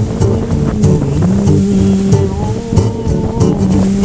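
Acoustic guitar strumming under a wordless vocal melody of long, held notes that glide from one pitch to the next.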